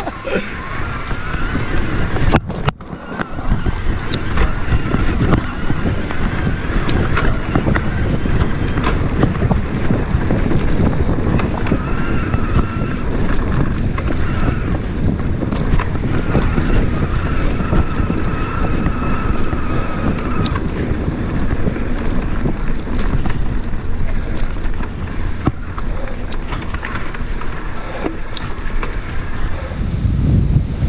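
Riding an electric mountain bike (Cube Stereo Hybrid 140) along a rough dirt trail: continuous rumble of tyres and frame over the ground and wind buffeting the camera microphone, with a faint steady whine from the e-bike's motor coming and going. A brief dropout about two and a half seconds in.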